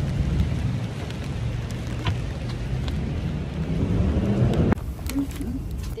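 Rain pattering on a clear plastic umbrella held overhead, with scattered sharp drop taps over a heavy, steady low rumble. The sound changes abruptly near the end.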